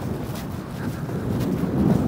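Steady low rumble of road traffic on a nearby busy main road, mixed with wind buffeting the microphone, swelling slightly near the end.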